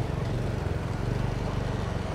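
Small motorbike engine running steadily with a low, fast-pulsing rumble, under a steady hiss of road noise.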